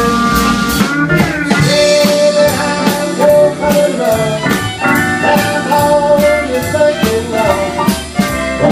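Live western swing band playing an instrumental break: bowed fiddle, steel guitar, upright bass, piano and drums, with long held, sliding notes over a steady beat.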